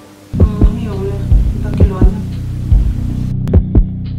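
Tension score for a film scene: a low sustained drone with a heartbeat effect, double thumps pulsing about every second and a half, starting just after the beginning.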